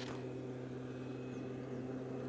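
Backpack motorised mist blower's small engine running steadily and faintly, a constant even hum, while it blows insecticide spray mist.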